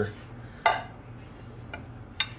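A metal can knocks once, sharply and with a short ring, against the rim of a glass baking dish as canned black beans are tipped out, followed by a fainter tap near the end.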